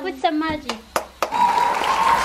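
A few sharp knocks, like a wooden spatula striking a steel wok, then from about a second and a half in, pork and mushrooms sizzling steadily in the wok.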